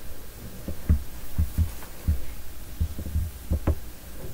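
A series of soft, low thumps at uneven intervals, several in close pairs, over a faint steady hum.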